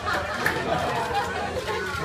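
Indistinct chatter of several people talking at once, no single voice standing out.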